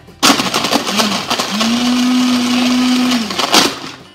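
Countertop blender pulsed to crush ice cubes in water: the motor starts about a quarter second in, runs with a loud rattling grind for about three and a half seconds, and stops.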